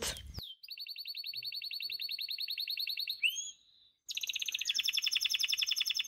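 Canary song: two rapid, high-pitched trills of evenly repeated notes, each about two to three seconds long, separated by a brief silence. The first trill ends in a few quick sliding notes.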